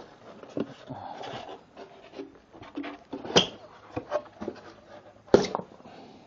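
Styrofoam packing insert being handled and pulled apart by hand, rubbing and creaking, with two sharp knocks: one about midway and a louder one near the end.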